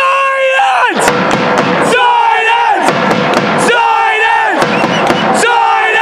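A man screaming at the top of his voice: four long yells about two seconds apart, each held high and then falling in pitch at the end, over the noise of a stadium crowd.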